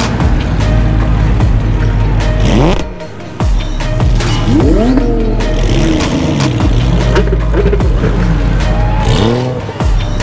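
Car engines revving and accelerating away one after another, their pitch sweeping up and down several times from a few seconds in, over loud background music with a heavy bass.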